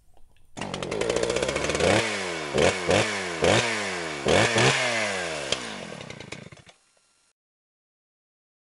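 Small gasoline engine revved hard several times, its pitch dropping after each blip of the throttle. It cuts off abruptly about a second before the end.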